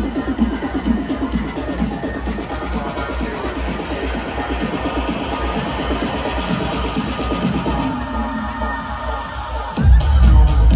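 Electronic dance music from a live DJ set, played loud over a large festival sound system, with a steady pulsing bass beat. Near the end the bass drops away briefly, then comes back in louder.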